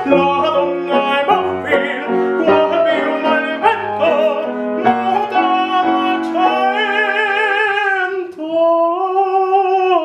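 A male operatic singer sings a classical aria with grand piano accompaniment. About two-thirds of the way in he holds a long note with vibrato, breaks off briefly, then holds another.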